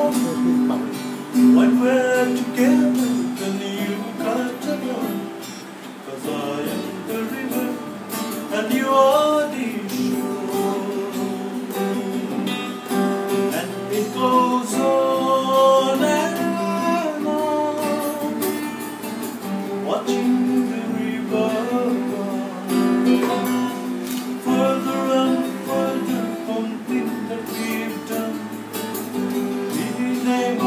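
A man singing a melody while strumming an acoustic guitar, the voice gliding over steady chords.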